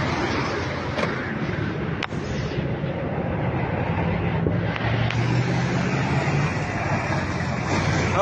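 Car driving on a road: steady engine hum with road and wind noise.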